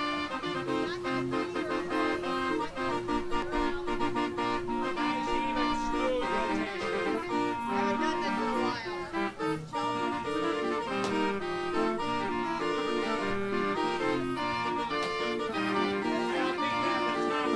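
Hand-cranked Raffin street organ playing a tune, its pipes sounding a melody over bass and accompaniment notes. The music starts abruptly at the very beginning as the crank is turned and keeps going steadily.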